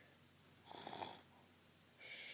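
A person making a mock snoring sound: one short, breathy snore a little after the middle, between quiet pauses.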